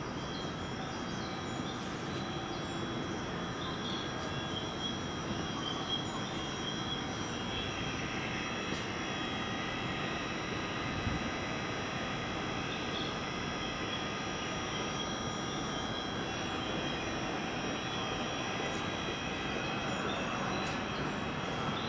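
Electric commuter train standing at a station platform, giving a steady hum with several thin high whining tones, likely from its on-board machinery such as air-conditioning units and electrical equipment.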